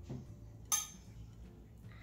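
A light clink of a metal spoon on a dish, with a fainter tap just before it, over a low room hum.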